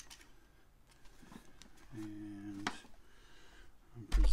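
Faint clicks and taps of plastic parts as a piece is fitted onto the handle of a Lucky Duck Revolt electronic predator call, with a sharper click near the end of a short, low hum from a man's voice about two seconds in.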